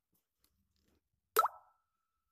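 Near silence, then about one and a half seconds in a single short rising electronic plop, with a brief tone ringing on after it.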